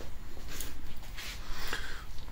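Quiet rustling and rubbing, handling noise from a hand-held camera being moved, over a low steady hum.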